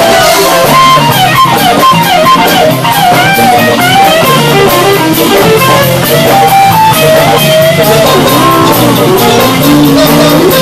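Live electric blues band playing a shuffle: an electric guitar lead with bending, sliding notes over bass, drums and keyboard.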